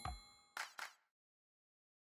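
The last notes of a logo jingle: a struck chime rings out and fades just after the start, followed by two short shimmering sparkle sounds about half a second later.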